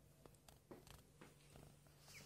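Near silence: room tone with a faint steady low hum and a few faint clicks and rustles.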